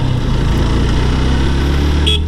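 Motorcycle engine running steadily at cruising speed, with wind and road noise rushing past.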